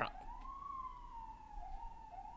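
Faint police siren wailing, rising slowly in pitch and then falling, and starting to warble up and down near the end.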